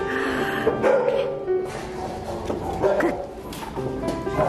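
Shelter dogs in kennel runs barking and yipping a few times, over background music.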